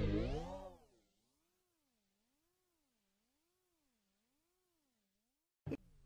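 The tail of a logo jingle, its pitch swept up and down by a steady wobble effect, fading out within the first second. Near silence follows, with a short blip just before the end.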